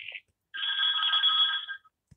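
A telephone ringing in the background, heard through a voicemail recording over the phone line: a short chirp at the very start, then one ring of about a second and a quarter beginning about half a second in. It is an incoming call reaching the caller while she leaves the message.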